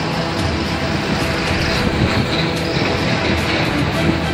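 Steady rush of floodwater from the opened dam gates, with background music over it.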